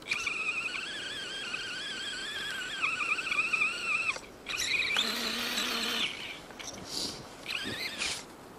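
Electric motor and gears of an Axial radio-controlled truck whining as it drives through snow, the pitch wavering up and down with throttle and load. The whine breaks off about four seconds in, then starts again and rises in pitch.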